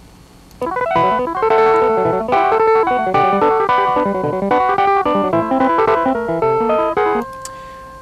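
Computer-generated electronic playback of a multi-voice piano piece scored in the Mockingbird editor: a quick melodic line over running figures, several notes sounding together. It starts about half a second in and stops about seven seconds in on one held note that fades away.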